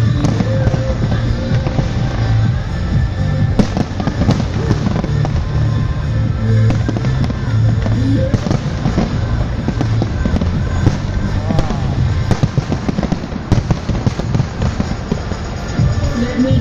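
Aerial fireworks bursting and crackling in rapid, unbroken succession over music with a steady heavy bass.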